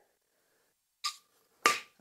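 Two brief scrapes of a metal measuring spoon in a can of baking powder, about a second in and again near the end, the second louder, each with a faint ringing note.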